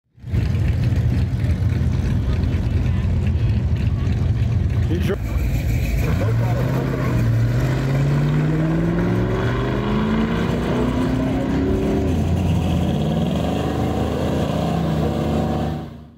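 1967 Ford Mustang's 289 V8 running loud and steady at the line, then launching about six seconds in and revving up in pitch, with a drop near twelve seconds as it shifts gear and then climbs again.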